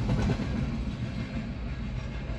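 A long freight train's last cars rolling away past the crossing, the noise fading, heard from inside a car.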